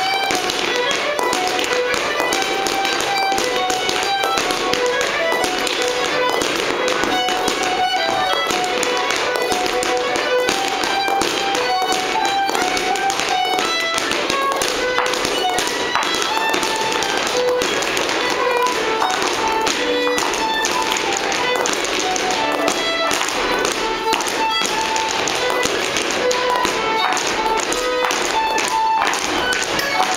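A lively dance tune with dancers' feet tapping in quick rhythm on a wooden floor.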